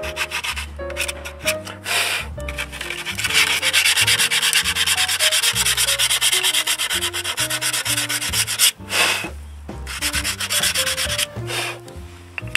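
Sandpaper rubbed in quick back-and-forth strokes over the edges of a new disc brake pad, deburring it so the pad will not make brake noise. The rubbing is heaviest in the middle, with a brief pause about nine seconds in.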